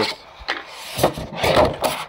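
Cardboard packaging scraping and rustling as an Element fire extinguisher canister is slid out of its box: a few rubbing scrapes, the longest and loudest near the end.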